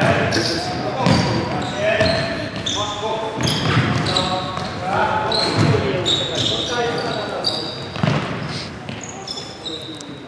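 Futsal being played in an echoing sports hall: sneakers squeaking sharply and often on the wooden court, the ball thudding off feet and floor, and players' shouted calls.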